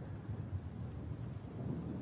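Low, steady background rumble of the film soundtrack's room tone, with no distinct event.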